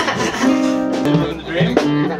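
Acoustic guitar strummed, a chord ringing for about a second, with a voice coming in over it near the end.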